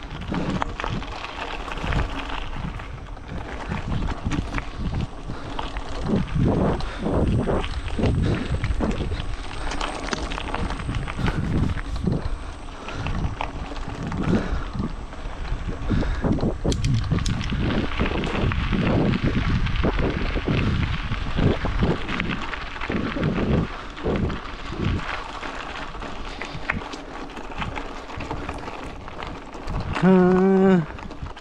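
Footsteps on a gravel trail, about two a second, with wind buffeting the microphone as a low rumble.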